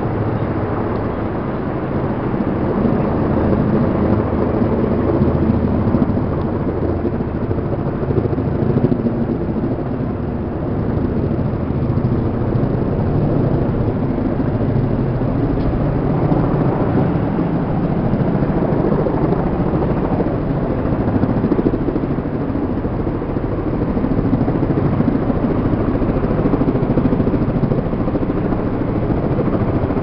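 Helicopter in flight: a loud, steady rotor and engine noise.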